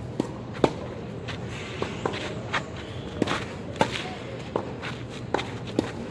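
Tennis rally on a clay court: sharp pops of the racket striking the ball, about nine in six seconds, the loudest about two-thirds of a second in, mixed with the ball's bounces. Shoes shuffle and step on the clay between the hits.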